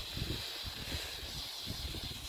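Small 'Elfenfeuer' ground firework fountain burning with a steady hiss as it sprays golden glitter sparks, with wind rumbling on the microphone.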